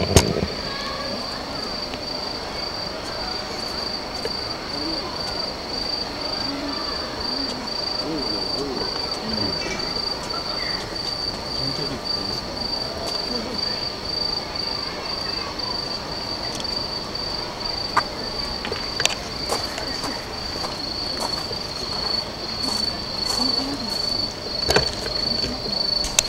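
Crickets chirping in a steady, high-pitched chorus, with a few faint clicks.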